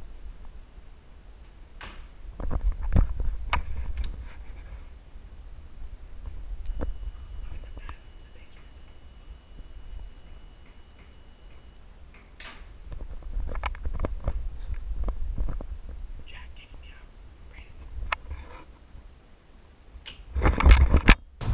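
Footsteps and knocks of someone moving through a house. They come in two bunches, one a couple of seconds in and one in the second half, over a low rumble from a microphone being carried.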